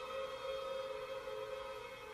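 Symphony orchestra holding a soft sustained chord, steady and fading slightly.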